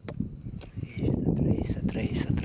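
A cricket's steady high-pitched trill, under a louder, uneven low rumbling noise on the microphone, with one sharp click just after the start.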